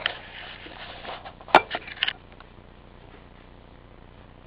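Camera handling noise as it is carried and set down on a kitchen counter: about two seconds of rustling with a sharp knock about one and a half seconds in and two lighter knocks just after, then quiet room tone.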